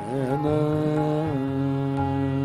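Male vocalist singing a thumri: a wavering, ornamented phrase opens it, then a long held note from a little past halfway, with harmonium and violin accompaniment.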